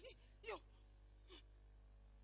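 A person's short, breathy cry falling in pitch about half a second in, then a fainter, shorter one about a second later, over a faint steady low hum.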